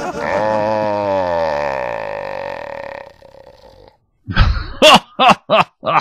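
One long, drawn-out comic vocal groan lasting about three seconds, sliding slowly down in pitch. After a second of quiet, a man's voice breaks in with short bursts of laughter and speech.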